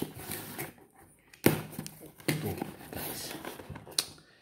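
Cardboard box being torn open by hand: one sharp, loud rip about one and a half seconds in, followed by the rustle and scrape of cardboard flaps and packing tape.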